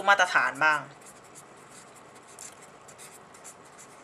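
Handwriting: faint, irregular scratching strokes of a pen or marker moving on a writing surface, after a brief bit of speech at the start.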